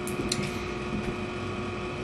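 Twin window fan running steadily: an even hum and hiss with a faint steady tone.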